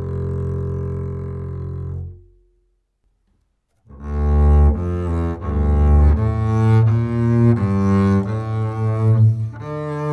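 Double bass played with the bow (arco): a long held note on Galli BSN 920 Bronze strings fades away about two seconds in. After a second or so of silence, a bowed phrase of several separate notes on Galli BSN 900 strings begins.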